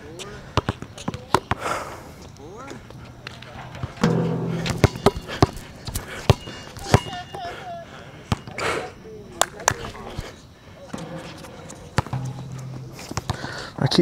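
Basketball dribbled on an outdoor hard court: a run of irregular sharp bounces, with a short shoe squeak about midway.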